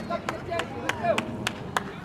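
Sharp hand claps from a spectator close to the microphone, about four or five a second, stopping near the end, with voices calling out from the sideline.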